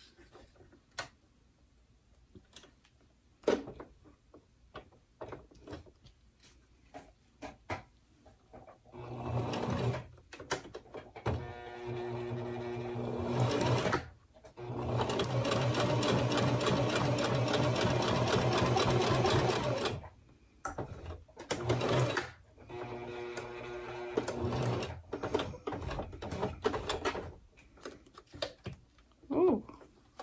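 Electric domestic sewing machine stitching a seam through layered vinyl in stops and starts: a few small handling clicks, then the machine runs in short bursts, one longer steady run of about five seconds in the middle, and a few more short bursts before it stops near the end.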